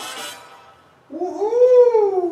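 Dance music stops, and a moment later comes one long vocal call that rises and then slides down in pitch over about a second and a half.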